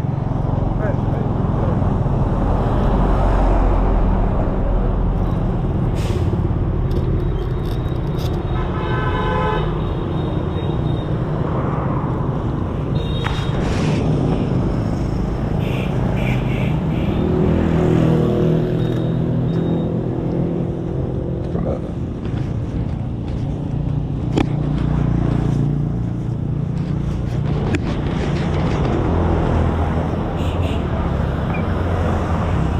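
Roadside traffic: motorbikes and other vehicles running past on the road, with a short horn toot about nine seconds in.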